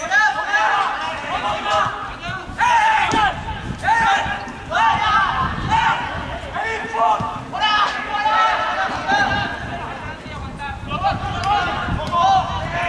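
Raised voices of footballers shouting and calling to each other during play, unintelligible, in a string of short high calls. There are a couple of sharp knocks, one about three seconds in and one just before eight seconds.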